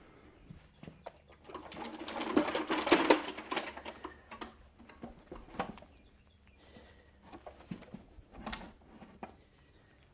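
Shuffling and scraping on a concrete floor for a couple of seconds, then scattered knocks and clicks as a draft horse's hind hoof is lifted and set on a plastic hoof stand.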